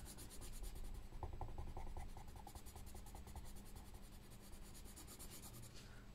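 Coloured pencil scribbling quickly back and forth on paper in faint, rapid strokes that die away about halfway through.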